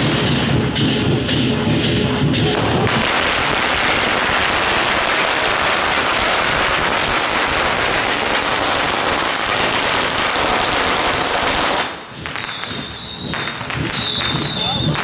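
Procession drums and music with regular beats, then, about three seconds in, a dense unbroken crackle from a long string of firecrackers going off, lasting about nine seconds before it thins to scattered pops.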